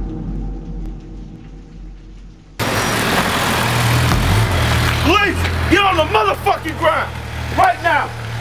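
Low vehicle rumble, then an abrupt cut at about two and a half seconds to loud street noise with idling car engines. From about five seconds in, men's voices shout over it again and again.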